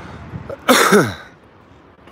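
A man coughs once, a single harsh cough that falls in pitch, about two-thirds of a second in.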